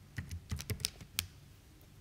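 Keys being tapped: about six quick clicks over the first second or so, then stillness, as a sum (4.5 × 12) is keyed in.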